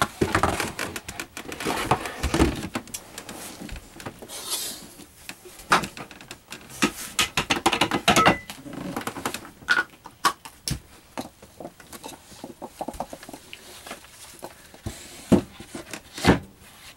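Irregular knocks, clicks and light rattles of a removable RV table and its post being handled and stowed in a storage compartment under a cup-holder console.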